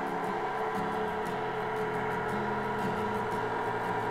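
KitchenAid stand mixer running on speed 2, driving the flat pasta roller attachment, a steady motor hum as a sheet of pasta dough feeds through the rollers.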